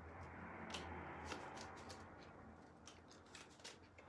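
A tarot deck being shuffled by hand: a faint rustle of cards with light clicks, fading away in the second half.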